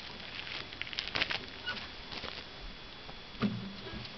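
Handling noise as a hand-held camcorder is picked up and moved: scattered clicks and rustles, with a low thump about three and a half seconds in.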